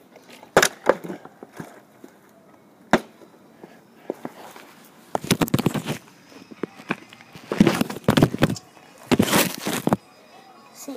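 Handling noise of a phone camera being picked up and held close to the microphone: sharp knocks in the first few seconds, then loud rubbing and bumping from about five seconds in, loudest near the end.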